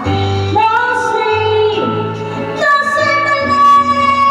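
A woman singing into a microphone over a music backing track, with sung phrases that glide between notes and a long held note starting a little under three seconds in.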